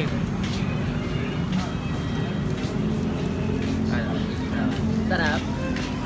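A steady low engine hum with a constant drone underneath, with a few brief soft voices about four and five seconds in.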